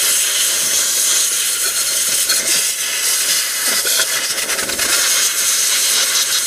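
A compressed-air jet hissing loudly and steadily as it blows dirt out of the pressure-hose connection on a power steering pump, so that grit will not cause a leak at the fitting.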